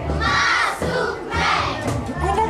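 A crowd of children shouting together in unison, two shouts about a second apart.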